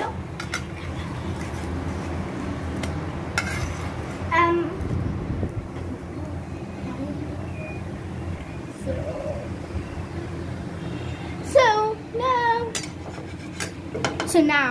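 Gas stove burner running under a frying pan with a steady low rumble, with a few light clinks of a utensil against the metal pan. A voice is heard briefly about four seconds in and again near the end.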